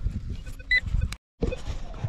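A low rumble on the microphone with a short, high electronic beep from a metal detector a little under a second in. The sound drops out completely for a moment just after.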